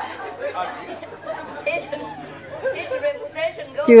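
Speech at a moderate level in a large hall, with chatter from listeners; a louder voice starts right at the end.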